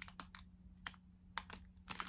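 A few faint, scattered crinkles and clicks of a clear plastic packet of hair bows being handled.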